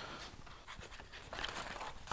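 Faint heavy breathing: a man panting.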